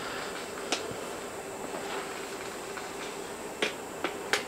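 Two short, sharp clicks about three seconds apart over a faint steady hum of background noise.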